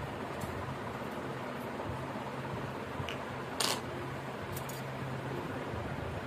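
A steady low hum, like a running fan, under a few light clicks of handling. The sharpest click, about three and a half seconds in, fits the metal coin being set down on the tiled floor.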